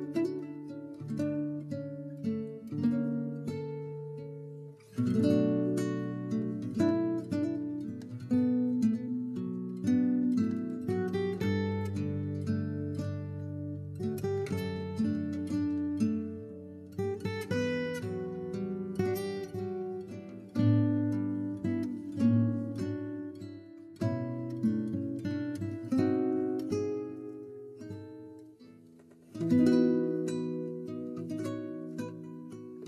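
Background music: plucked acoustic guitar playing chords and picked notes at an unhurried pace.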